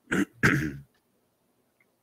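A man clearing his throat: two quick rasps within the first second, the second longer and louder.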